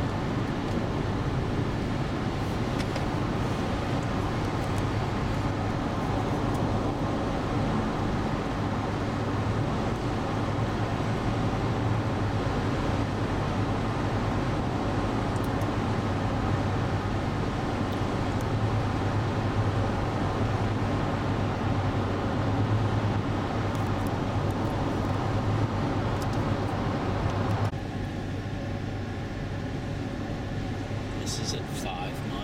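Steady highway road noise inside the cabin of a 2003 Acura MDX cruising on the interstate: an even rush with a low hum. It drops suddenly to a slightly quieter, different tone near the end.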